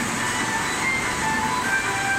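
A steady, loud roar of glassworks furnaces and blowers, with music playing over it; short high tones come and go.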